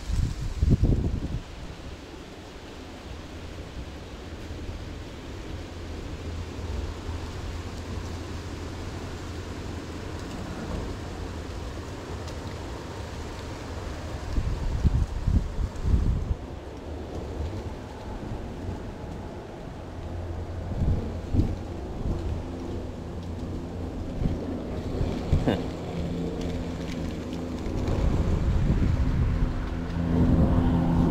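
Wind buffeting the microphone of a body-worn action camera as a low, steady rumble, with a few short knocks and rustles from handling. Near the end, a steady low hum with several held tones comes in.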